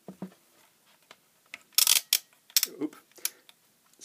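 Clicks and clatter of a digital multimeter and its test leads being handled and moved off the bench, a few scattered knocks with the loudest sharp clatter about halfway through.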